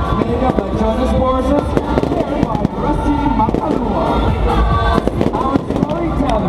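Fireworks crackling and popping in rapid, irregular bursts, mixed with voices and music.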